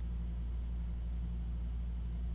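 Steady low hum with faint hiss underneath: background noise on a video-call audio line.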